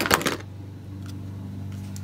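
Plastic makeup packages clatter briefly as a hand rummages through a box of cosmetics, then only a steady low hum remains.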